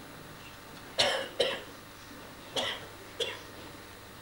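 A man coughing four times in two pairs of short, sharp coughs.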